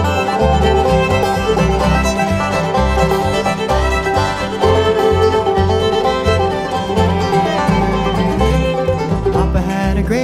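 Bluegrass band playing an instrumental break: fiddle bowing the melody over banjo, guitar and upright bass, with the bass keeping a steady pulse of low notes.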